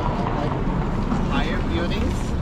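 City street ambience: a steady low rumble of traffic with wind on the microphone, and a person's voice starting briefly near the end.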